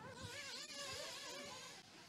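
Several 1/8-scale off-road RC race buggies running on a dirt track. Their motors make a high, buzzing whine that rises and falls in pitch with throttle.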